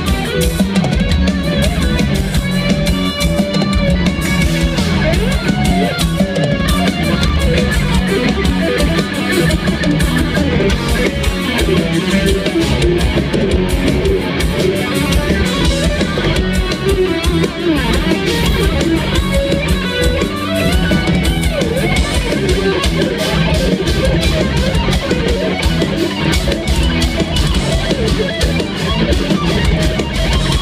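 Progressive metal band playing live through a concert PA: electric guitar, bass and a large drum kit, loud and continuous, as heard from within the crowd.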